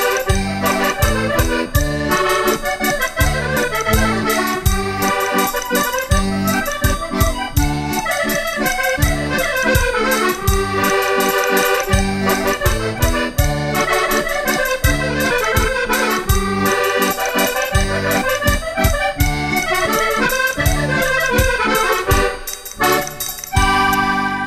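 Portuguese concertina (diatonic button accordion) playing a lively instrumental passage over a steady bass beat, closing on a held final chord near the end.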